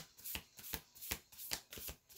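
A tarot deck being shuffled by hand: a run of short, soft card taps and flicks, about three a second.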